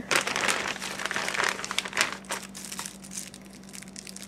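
A clear plastic bag crinkling and crackling as it is handled and an item is drawn out of it. The crinkling is busiest in the first two seconds, then thins out. A faint steady low hum runs underneath.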